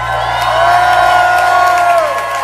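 Concert audience cheering and whooping as a song ends. Several long, high held whoops rise at the start and drop away near the end, over a low steady hum.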